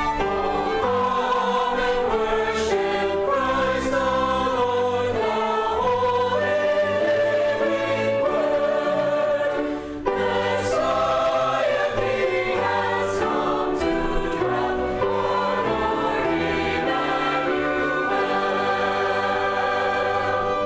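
Mixed church choir singing a Christmas cantata with a small string ensemble of violins, cello and double bass. There is a short break between phrases about halfway through.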